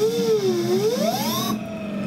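Brushless hub motor on a Kelly KBS72151E controller spinning its raised wheel under throttle: a whine that rises, dips, then climbs steeply and drops away about one and a half seconds in. The motor is running out of phase, which the builder says needs tuning.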